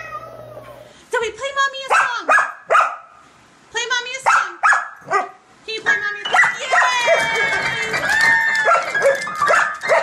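Dog pressing piano keys with its paws and vocalising along: a string of short yips and barks, then from about six seconds in held piano notes under a wavering, howling 'song'.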